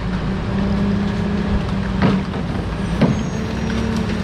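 Rear-loading garbage truck running steadily, with two sharp knocks about a second apart, the loudest moments.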